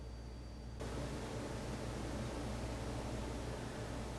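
Steady background hiss with a low hum under it, stepping up a little about a second in; no distinct event.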